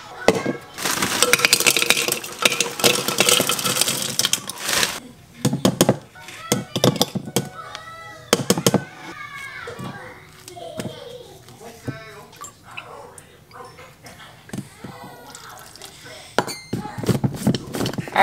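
Frozen berries clattering into a plastic Magic Bullet blender cup for about four seconds, followed by softer knocks of ingredients being added. Near the end come a few sharp clicks as the blade lid goes on the cup.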